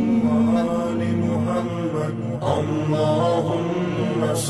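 Islamic devotional chanting of the salawat, a voice holding long, wavering notes over a steady musical drone.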